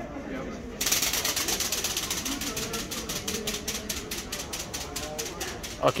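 A kit-built flapping-wing toy flyer beating its wings after launch: a fast, even fluttering clatter of about ten beats a second that starts about a second in and fades as it flies away. A short exclamation comes at the very end.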